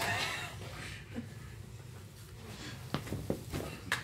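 Mostly quiet room. A short vocal sound trails off at the start, then a few light taps come near the end.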